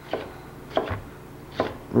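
Chef's knife slicing a red bell pepper on a cutting board: three separate cuts, each a short knock of the blade on the board, a little under a second apart.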